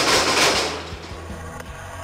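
Rotary cutter's spinning heat-treated blades striking a two-inch steel rod: a sudden loud crash of metal on metal with a burst of grinding and scattering debris that fades over about a second. This is the impact that trips the cutter's shear-bolt safety mechanism and stops the blades.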